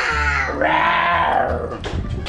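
A toddler's two drawn-out, high-pitched squeals, the second starting about half a second in and arching up and down in pitch.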